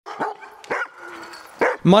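Husky sled dogs barking in their kennel: three short, sharp barks spread across about two seconds.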